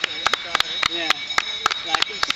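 Spectators clapping in quick, uneven claps, with voices calling out as runners pass.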